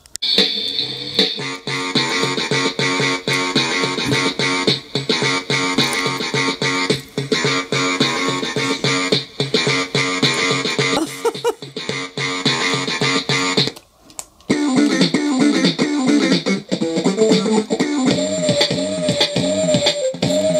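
Electronic toy drum pad playing a tune with a steady beat. It breaks off briefly about two-thirds of the way through, then a different tune with a melody line starts.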